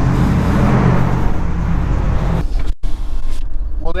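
Steady vehicle noise, a low hum with a hiss, beside a pickup truck; it cuts off suddenly near three seconds in, giving way to the quieter, duller hum of the pickup's cab while driving.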